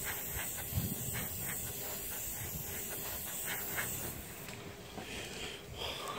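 Gravity-feed airbrush hissing steadily as it sprays white paint, the hiss stopping about four and a half seconds in.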